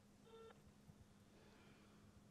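A single faint, short electronic beep from a mobile phone while a call is being placed, over near silence with a low steady hum.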